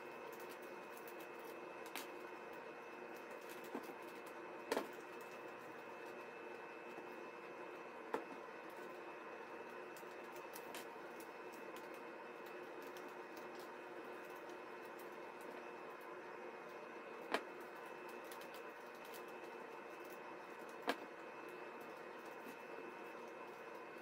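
Faint steady hum of room tone, with a handful of short, sharp clicks and taps scattered through it as hands handle woven magazine-paper strips and small plastic clips.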